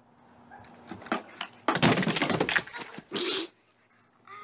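A pogo stick knocking a couple of times on a small wooden platform, then a loud clattering crash lasting about a second as the rider falls and the platform tips over, followed by a short, loud yelp.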